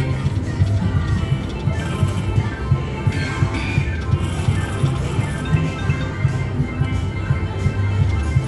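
China Mystery slot machine playing its game music during the Jackpot Streams feature: a steady low beat under bright chiming melodic notes.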